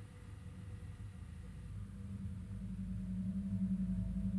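A low, steady droning tone, like an ambient soundtrack drone, swelling gradually louder.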